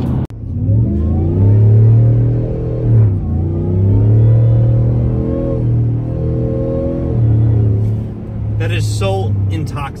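Whipple 3-liter supercharged 5.0 Coyote V8 of an F-150 pulling hard under full throttle, heard from inside the cab: a loud supercharger whine over the V8 exhaust, the revs climbing and easing several times. Traction control is holding the rpm on the wet road, keeping the whine consistently loud.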